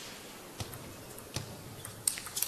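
Quiet hall background with two or three faint, sharp clicks of a celluloid table tennis ball striking a bat or table.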